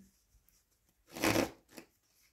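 A short papery swish of cards being handled or slid over the cloth, about a second in, with a smaller one just after.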